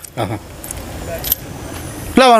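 A pause in speech, with a quiet outdoor background and a brief, light metallic jingle about a second in.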